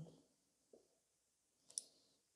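Near silence with two faint clicks, a tiny one a little under a second in and a sharper one near the end.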